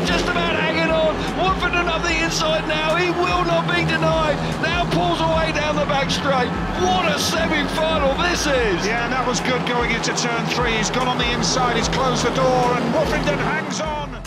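Speedway motorcycles' 500cc single-cylinder engines running flat out round the track during a race, with crowd noise and broadcast commentary mixed in.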